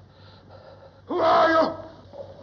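A man's short, startled vocal cry, a voiced 'ah!' of fright about half a second long, about a second in, over a faint hiss of old film sound.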